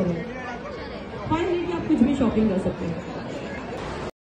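Indistinct chatter of several people talking, with one voice coming through more clearly in the middle.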